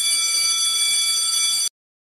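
A steady, high-pitched electronic buzzer-like tone that holds one pitch and cuts off abruptly about one and a half seconds in.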